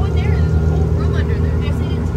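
A motorboat's engine running steadily, heard from inside the boat's cabin as a loud, even low drone with a constant hum.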